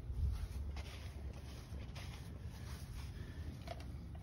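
Faint footsteps and handling rubs on a hand-held phone as it is carried along, over a low steady rumble.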